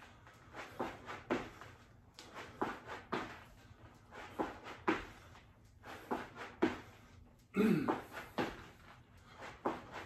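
Feet landing on a rubber floor mat during repeated squat-jack hops, a short thud with each landing, roughly one to two a second. A brief voiced exhale or grunt comes about eight seconds in.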